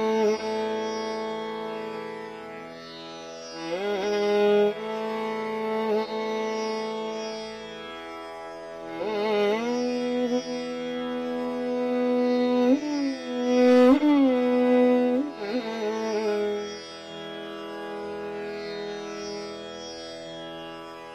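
Hindustani classical violin playing a raga: long held bowed notes joined by slow sliding glides (meend) between pitches.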